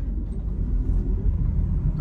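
Steady low rumble inside the cab of an electric-converted Ford F-150 pickup pulling away from a stop under a heavy load: road and drivetrain noise.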